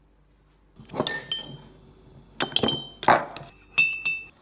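Kitchen crockery clinking: a ceramic mug and other dishes are set down and knocked together on a stone benchtop. There are about five sharp clinks with a short ring, starting about a second in.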